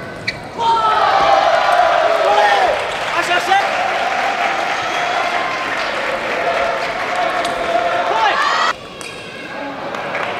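Table tennis ball knocking off bats and the table during rallies, under long drawn-out voices calling out that dominate the sound and fall away near the end.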